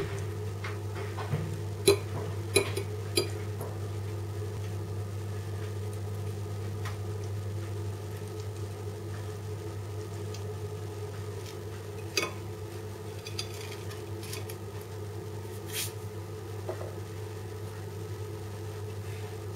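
A metal fork clicking and scraping against a ceramic plate every few seconds, with the loudest clicks in the first few seconds. A steady low hum runs underneath.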